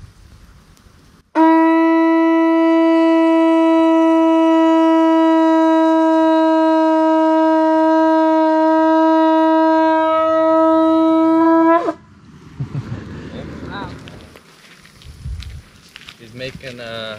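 Conch shell trumpet (caracol) blown in one long, steady note of about ten seconds, starting just over a second in and dropping slightly in pitch as it cuts off.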